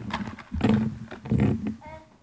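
A young child's voice making three loud, wordless play cries in quick succession, the last one rising and held briefly.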